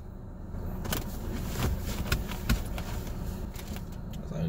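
Two people drinking from aluminium cans, with gulps and short sharp clicks, over a steady low rumble inside a car.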